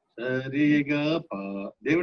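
A man's voice singing held notes, one after another with short breaks between them, as in a sung swara scale exercise, heard over a video-call connection.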